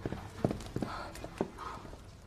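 Footsteps of high-heeled boots: a handful of sharp heel clicks that slow and stop about a second and a half in.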